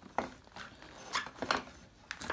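A few short, quiet metallic clinks and knocks as the rear wheel of a KTM 690 Duke is lined up and its thru-axle is fed through the swingarm and hub.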